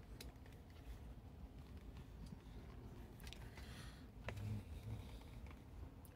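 Faint scattered clicks and handling knocks of a loose camera mount being tightened on its tripod.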